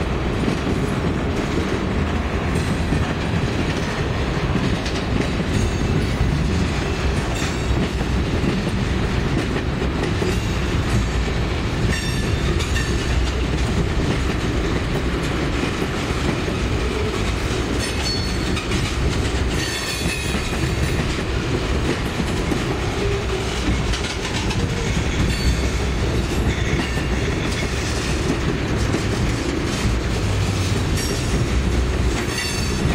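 Tank cars of a Norfolk Southern freight train rolling past close by, their wheels rumbling steadily and clicking over rail joints. A short, sharper hissing screech comes about twenty seconds in.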